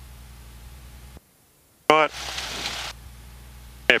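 Cessna 172's piston engine idling steadily during a magneto check before shutdown, heard faintly through the headset intercom. It cuts out suddenly about a second in and comes back after a spoken word.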